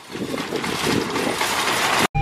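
Wire shopping cart rattling and clattering steadily as it is pushed over parking-lot asphalt; it is a noisy cart.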